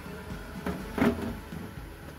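A light knock or clatter of kitchenware about a second in, over a steady low hum.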